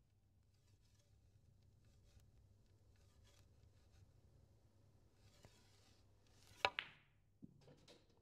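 A snooker shot played with stun screw: after near silence there is a faint tap about five seconds in, then a single sharp click of the cue ball striking the black, followed by a few fainter knocks as the balls run on. Between them there is only a low room hum.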